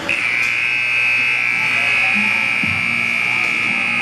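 Ice arena buzzer sounding one long, steady high-pitched tone that starts suddenly and lasts about four seconds, the signal for the end of the period.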